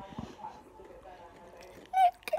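A child's voice, quiet and indistinct, murmuring or half-talking.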